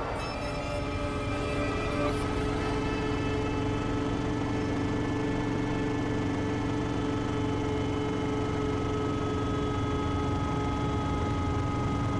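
A steady, unchanging drone of several held tones over a low rumble, like aircraft engine noise or a sustained music pad.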